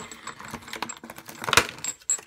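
Clear plastic blister packaging crinkling and crackling as it is handled and pulled open, with irregular clicks, a sharp crack about one and a half seconds in, and light metallic clinks of the steel Hornady Lock-N-Load press bushings inside.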